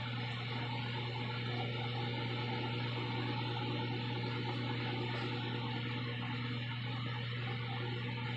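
Microwave oven running mid-cycle: a constant low hum with a steady fan-like whir.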